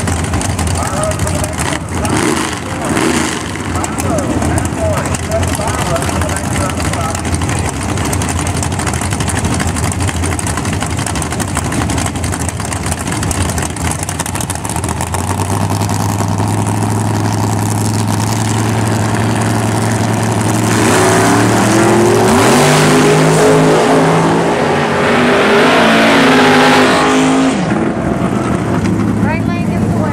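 Two drag-race cars' engines idling at the starting line, coming up stronger about halfway through. Near the two-thirds mark they launch and accelerate hard down the track, the pitch climbing and dropping with gear changes before the sound fades into the distance.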